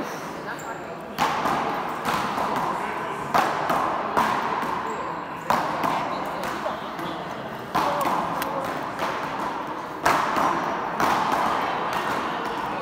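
Big-ball paddleball rally in an echoing indoor court: sharp cracks of the ball off paddles and the front wall, about eight in all, spaced a second or two apart, each ringing on in the hall's reverberation.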